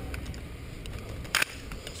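Low rumble and movement noise picked up by a soldier's helmet-camera microphone as he moves down a rocky slope, with one sharp crack about a second and a half in.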